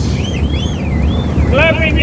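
Wavering, up-and-down whistling over the steady drone of a boat's motor and wind on the microphone, then a high excited voice calling out near the end.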